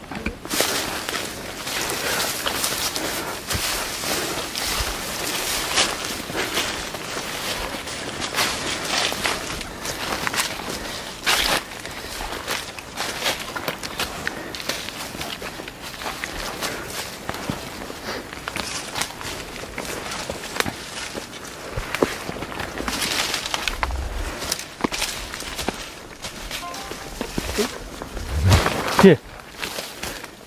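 Footsteps on a steep forest trail, with leaves and branches rustling and brushing against the walker as he pushes through dense undergrowth. A short vocal sound, such as a grunt, comes near the end.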